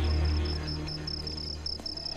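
Crickets chirping, a high pulsing note about five times a second, over a steady low drone.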